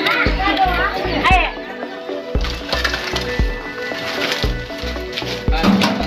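Background music with a steady bass beat. Voices rise over it in the first second or so.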